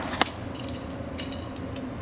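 A box knife being picked up off a table and handled: a sharp click about a quarter second in, then a few faint ticks over low room noise.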